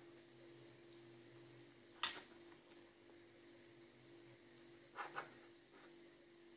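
Faint handling noise of a plastic toothpaste tube being squeezed in the hand: one sharp click about two seconds in and two softer clicks close together near the end, over a faint steady hum.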